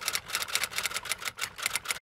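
Typewriter sound effect: a rapid, uneven run of key strikes, about nine a second, typing out a title card.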